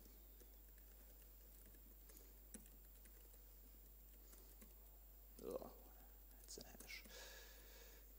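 Faint computer-keyboard typing, sparse soft key clicks, with a quiet mumbled voice about five and a half seconds in and again around seven seconds.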